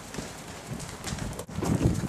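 Running footsteps on stone paving: a quick, irregular series of footfalls, louder near the end.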